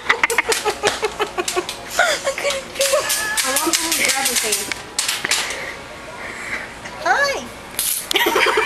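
A woman laughing in repeated bursts, with a short rising-and-falling vocal sound near the end.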